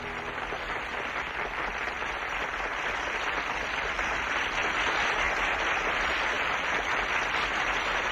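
Large concert audience applauding, growing gradually louder.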